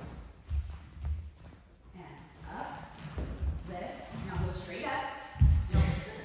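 Several dull thuds of a ballet dancer's feet landing and stepping on the studio floor during turns, the heaviest near the end.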